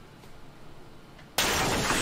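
Quiet film soundtrack broken near the end by a sudden loud crash-like noise that starts abruptly and carries on: a jump-scare sound in the horror film.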